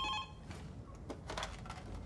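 A desk telephone's electronic ring, a steady tone, stops almost at once, followed by quiet room tone with a few faint clicks.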